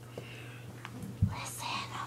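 A person whispering, with a single sharp low thump just past a second in, over a steady low hum.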